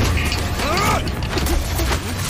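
Action-film soundtrack from a fight scene: a steady low droning score, with a brief falling cry about half a second to one second in.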